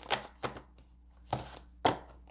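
Four short sharp taps of oracle cards being handled against the table, spaced unevenly, the last one the loudest near the end.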